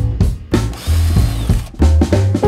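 A power tool with a socket spins a rusty bolt out of an engine flange: a whirring run of about a second, with a faint whine that rises and then falls. Background music with bass and drums plays under it.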